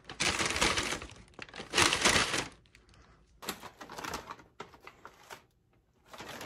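A paper takeout bag rustling and crinkling as it is handled: two loud bursts in the first two seconds or so, then lighter, scattered rustles.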